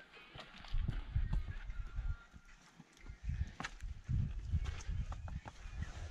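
Footsteps on a rocky, partly snow-covered trail: irregular steps with sharp clicks of boots on stone, over uneven low rumbles on the microphone.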